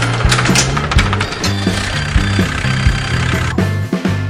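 Background music with a steady bass line, over a rattling cartoon sound effect of a roll-up garage shutter opening that stops about three and a half seconds in.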